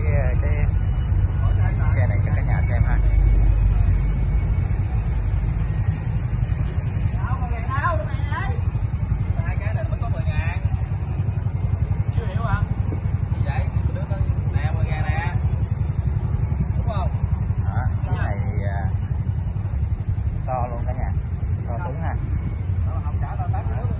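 An engine running steadily, a low rumble throughout, slightly louder in the first few seconds, with people talking in the background.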